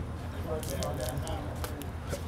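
Quiet outdoor background: a steady low rumble, a faint voice briefly in the first second, and a few small clicks and crackles.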